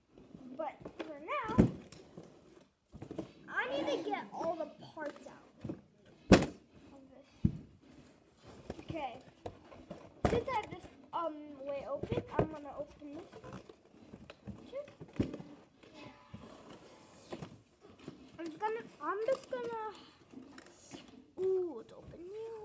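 A child's voice, talking and exclaiming off and on, too indistinct to make out words. Two sharp knocks, about six and ten seconds in, come from handling the cardboard blaster box and its packaging.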